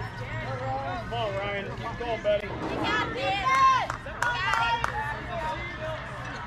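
Unclear voices of players and spectators calling out and chattering across the field, over a steady low hum. The calls get louder and higher about three seconds in.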